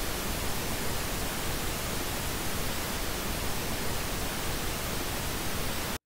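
Correlated pink noise test signal played flat, with no EQ applied: a steady, even hiss that cuts in abruptly and stops abruptly near the end. It is the unequalised reference for judging treble dips.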